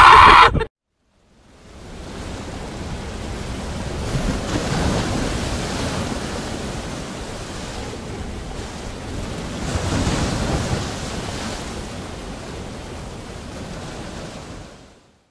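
Ocean surf washing in a steady rush that fades in after a moment of silence, rising to its loudest about four to five seconds in and again around ten seconds in.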